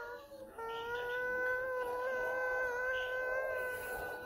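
A single long, high wail held at a steady, slightly wavering pitch for about three seconds.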